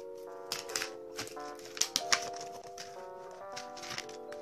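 Background music with held chords that change every second or so, over a handful of sharp crackles from an L.O.L. Surprise ball's wrapping being peeled open by hand, the loudest about two seconds in.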